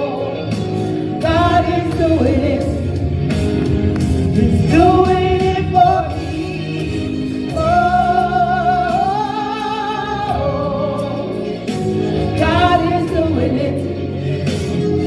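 Two women singing a gospel song into microphones, with held, wavering notes over instrumental accompaniment with drum or cymbal hits.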